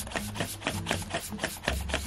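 Latex twisting balloon rubbing and squeaking under the fingers as it is handled and twisted, a quick, irregular run of short squeaks and ticks.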